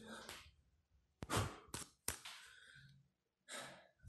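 Faint breaths and a sigh from a man close to the microphone, with a couple of small clicks as the camera is handled.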